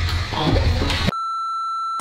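A steady electronic beep, one flat tone a little under a second long, starting about halfway in and cutting off sharply. Before it, the tail of busier intro sound.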